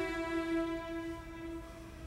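Background music: one long held note from a bowed string instrument, slowly fading.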